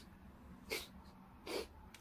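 Two short sniffs or puffs of breath through the nose, under a second apart, over quiet room tone.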